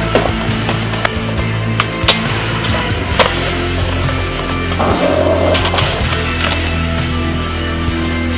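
Rock music soundtrack with skateboard sounds over it: wheels rolling on concrete and several sharp, irregularly spaced clacks of the board popping and landing.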